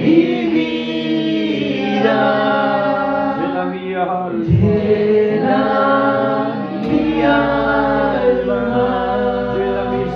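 Congregational worship singing: several voices singing a hymn together in long held notes, with a man singing into a microphone among them.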